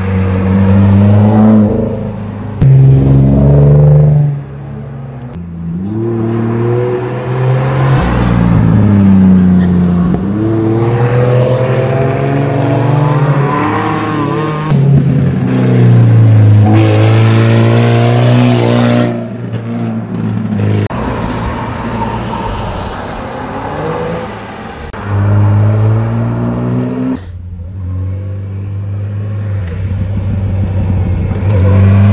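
Several cars taking a tight bend one after another, their engines revving up as they accelerate out of the corner and dropping back with gear changes. The sound switches abruptly from one car to the next several times.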